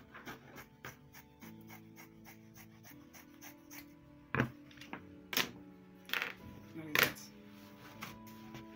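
Fabric shears cutting through folded cloth in a rapid, even run of snips, with four louder sharp clicks in the second half, over background music.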